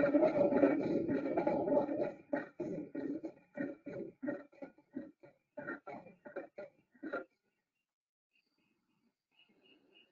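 Leopard's sawing call, a series of guttural rasping grunts. The grunts run close together at first, then break into separate strokes about three a second that fade out around seven seconds in.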